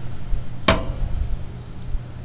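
A single sharp click about two-thirds of a second in, over a faint steady hum.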